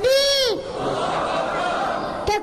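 A high-pitched voice shouting a drawn-out "Allahu Akbar" once, in the first half second, its pitch rising then falling, over a steady murmur of crowd noise in a hall.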